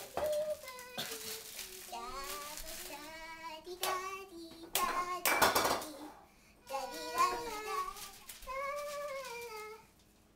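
High-pitched young girls' voices singing and chattering in sing-song, with several notes held for about a second. A short burst of rustling noise comes about five seconds in, the loudest moment.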